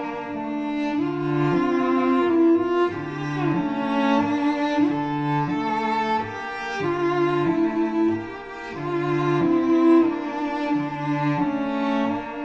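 Two cellos playing a slow, sparse, mournful duet: a lower cello repeats a short low figure about once a second beneath a held upper line, with a few sliding notes near the middle.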